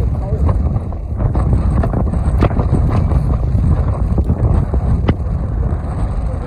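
Wind rumbling on the microphone, with faint voices of passersby and a few light clicks.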